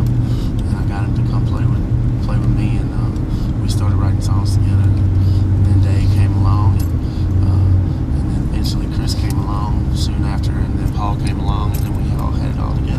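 Steady low rumble of a vehicle's engine and road noise heard from inside the passenger cabin, with people talking over it.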